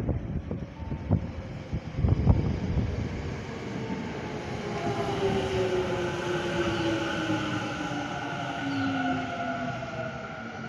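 Tokyo Metro 10000 series train pulling into the station: a steady running rumble with several motor whines that slowly fall in pitch as it slows. A few low thumps come in the first couple of seconds.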